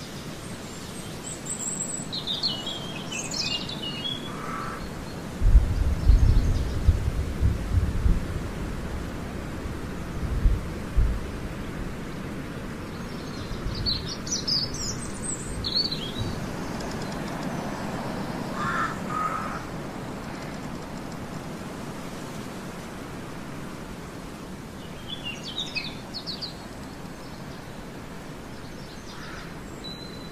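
Small birds chirping in short bouts, about one every ten seconds, over a steady background hiss. A run of low bumps and rumbles comes between about five and eleven seconds in.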